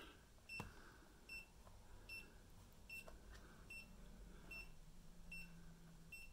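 Faint, short, high electronic beeps from the National Radicame C-R3 radio/camera, repeating evenly about once every three-quarters of a second.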